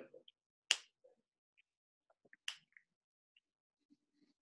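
Two sharp clicks about two seconds apart, the first louder, with a few faint ticks between them and otherwise near silence.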